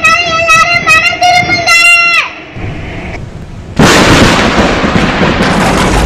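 A child's high voice calling out in long, drawn-out words, ending about two seconds in. After a short lull, a sudden loud boom hits about four seconds in and rolls on as a heavy rumble.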